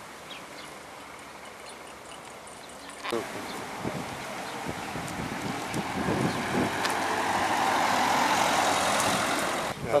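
A road vehicle passing close by: its noise builds over several seconds, is loudest near the end, and breaks off abruptly.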